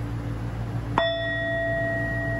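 Metal singing bowl struck once with a mallet about a second in, a light strike that is "kind of weak", ringing on with a steady tone and higher overtones.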